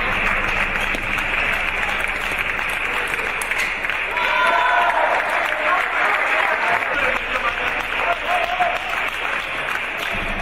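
Spectators clapping steadily after a table tennis point, with a short shouted voice about four seconds in.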